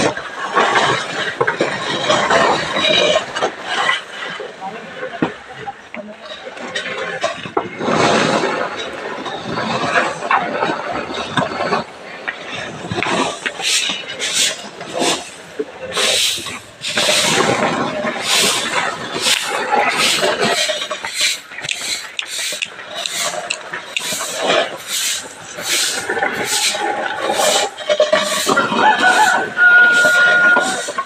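Grain being raked and swept across a concrete drying floor: dry, gritty scraping. From about halfway through it becomes a regular run of strokes, about one and a half a second.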